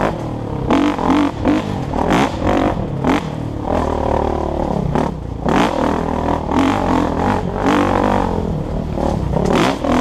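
Dirt bike engine revving up and dropping back again and again, about once a second or so, as it is ridden hard along a rough dirt trail.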